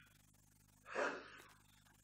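A man's single audible breath, a short soft rush of air about a second in, picked up close by the microphone; otherwise near silence.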